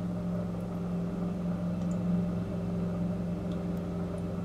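Steady low electric hum of an aquarium filter pump motor running, holding one even pitch throughout.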